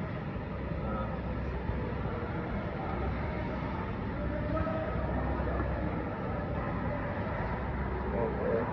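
Steady low rumble of workshop background noise, even throughout with no distinct strikes or rhythm.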